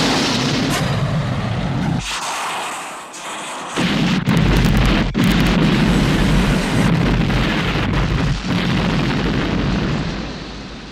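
Film explosion effects: loud blasts and a heavy rumbling noise. The sound dips about two seconds in, and a deeper, heavier blast comes in near four seconds and carries on.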